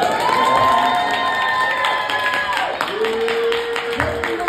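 Comedy-club audience cheering and clapping, with a long held whoop for the first two and a half seconds and a lower held shout after it. The clapping grows denser toward the end.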